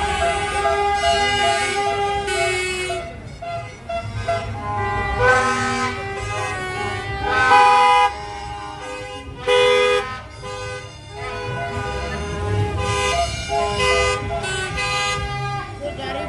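Car horns honking over and over in the slow traffic: some held for a couple of seconds, others short blasts, the loudest two coming about halfway through.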